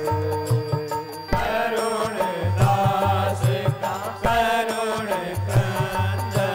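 Indian devotional music: a voice singing a chant-like melody over a held instrumental note and a repeating low drum pattern.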